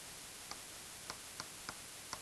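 Four faint, irregularly spaced clicks from a digital pen tapping on its tablet as a colour is picked and writing begins, over a steady low hiss.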